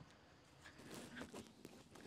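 Near silence: faint outdoor ambience with a few soft scattered ticks and rustles.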